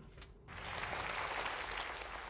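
Studio audience applauding. The applause sets in about half a second in and slowly dies away.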